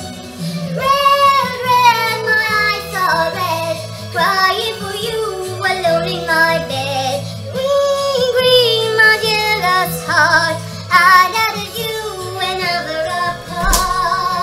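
A woman singing a slow, sustained melody with vibrato over a backing track.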